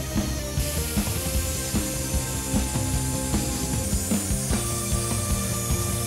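Angle grinder cutting through a solid steel bar: a steady high grinding hiss, under background music.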